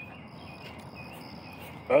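Crickets chirping, a quiet thin high trill over a faint background hiss.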